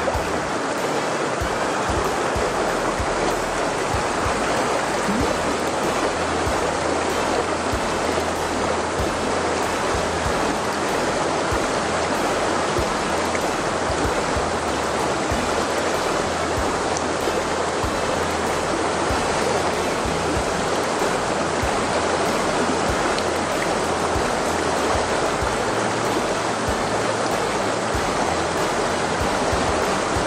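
Shallow, rocky mountain river rushing through a riffle: a steady, unbroken rush of white water.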